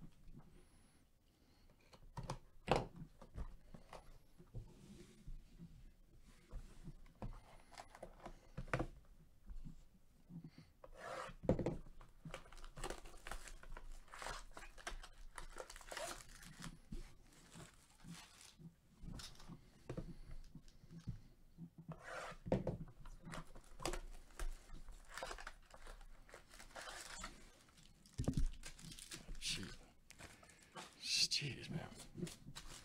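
Clear plastic shrink wrap being torn and crumpled off a cardboard hobby box of trading cards: irregular crackling and crinkling with sharp taps and handling knocks, busiest in the middle and second half.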